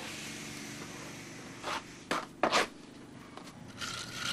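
Hand tool scraping over freshly applied mineral scraped render (krabpleister) while details are finished by hand: a steady hiss, then three short scraping strokes about two seconds in, the last the loudest.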